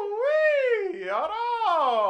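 A man's voice singing one long, wavering note with no beat behind it, swooping up and down in pitch several times before sliding downward near the end.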